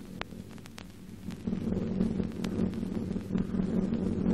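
Steady droning of aircraft engines on an old optical film soundtrack, growing louder about one and a half seconds in, with scattered clicks of film crackle.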